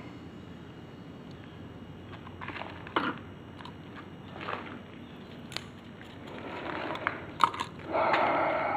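A plastic chlorine test-kit comparator being rinsed: water poured and swished in its clear tube, with a few light plastic clicks and knocks, the sharpest about three seconds in and near the end.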